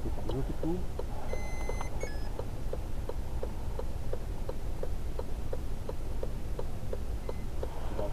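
Inside a stationary car, a turn-signal or hazard-light relay ticks steadily about three times a second over the low hum of the idling engine. A short electronic beep sounds about a second and a half in.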